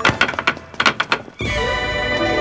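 Rapid, irregular wooden knocks of yamen runners' long staves striking the floor. About a second and a half in, the knocks stop and a sustained musical chord comes in.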